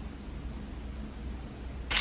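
Quiet room tone with a steady low hum. No distinct sounds until a voice begins right at the end.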